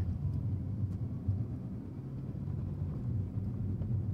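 Steady low rumble of a car being driven, heard from inside the cabin: engine and road noise with no sharp events.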